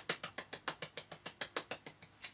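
A quick run of small hand claps, about seven a second, made with the palms held together.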